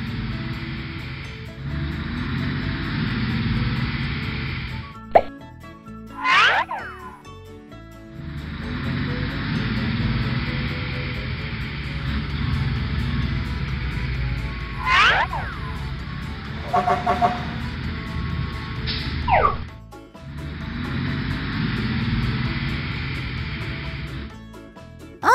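Cartoon sound effects over a steady background music bed: two sliding-pitch swoops about six and fifteen seconds in, a short run of beeps, then a gliding whistle. The music bed drops out briefly twice.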